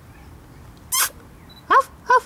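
A three-week-old husky-type puppy giving two short, high yelps, one about a second in and a rising yip near the end.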